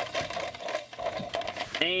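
Toy WWE Championship spinner belt being handled, its spinning centre plate giving a fast, even rattle that fades out about a second and a half in.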